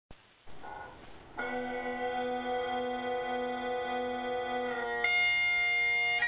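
Bagpipes starting up: a brief rough swell, then a steady held drone and note from about a second and a half in, stepping up to a higher note about five seconds in.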